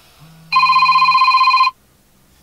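Smartphone ringing with an incoming call: a single loud, trilling electronic ring lasting a little over a second.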